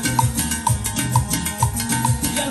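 Live band playing an instrumental passage, with drum kit and bass, and a short high percussion tap on each beat about twice a second.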